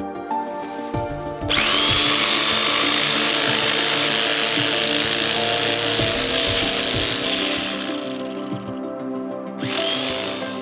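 Corded electric carving knife cutting through thick upholstery foam. The motor whine rises as it starts about a second and a half in and runs for about seven seconds. It starts again briefly near the end.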